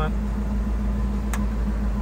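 1999 Ford Mustang engine idling steadily after a remote start, with one short sharp click about a second and a half in.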